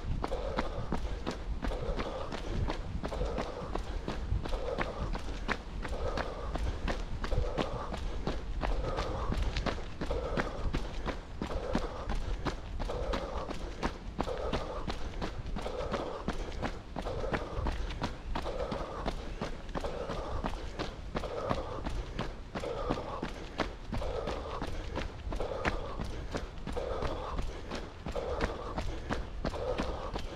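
A runner's footsteps at a steady pace on a dirt forest path, with his heavy rhythmic breathing, a little more than one breath a second.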